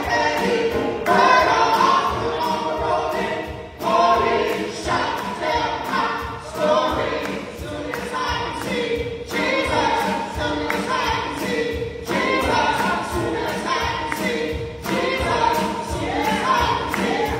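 Small gospel vocal group of women and a man singing a praise song with a live band, drums keeping a steady beat.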